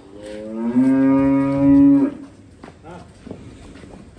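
A bovine mooing: one long, loud call that rises in pitch at its start, then holds steady and cuts off about two seconds in.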